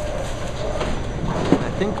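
Bowling ball rolling down the lane with a steady low rumble, and one sharp knock about a second and a half in.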